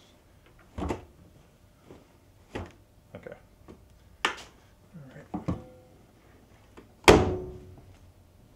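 A few separate knocks and thumps as clothes are pushed into the drum of an Electrolux EFLS517SIW front-load washer, then the washer door swung shut with a loud thunk about a second before the end, ringing briefly after it.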